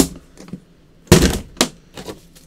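An aluminium case being handled and moved: a sharp click at the start, then a loud clunk about a second in, followed by a lighter knock.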